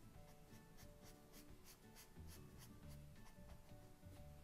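Faint scratching of a Faber-Castell Pitt brush-tip pen on sketch paper: quick, repeated short hatching strokes, several a second, laying in shadow. Quiet background music runs underneath.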